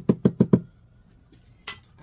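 A small pink-handled hand garden tool knocked against a wooden planter box, five quick loud knocks in about half a second, followed by a fainter single click near the end.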